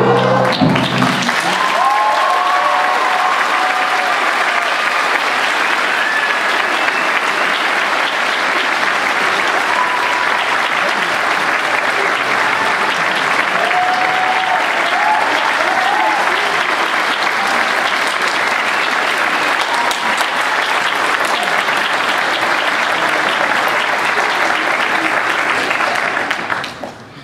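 Theatre audience applauding steadily as the music ends, with a few voices calling out in the clapping. The applause cuts off suddenly at the end.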